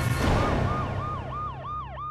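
A whooshing swell, then, from about half a second in, a police-style siren sound effect in a rapid repeating yelp that drops in pitch about three times a second, over a low steady drone.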